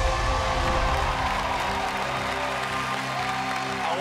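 Game-show music cue with held tones playing over studio audience applause, starting suddenly just before and marking a correct answer.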